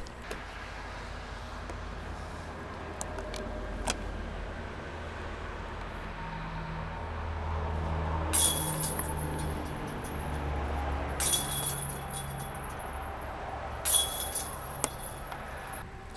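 Disc golf basket chains jangling three times, each for about a second, as discs strike them, over a steady low rumble.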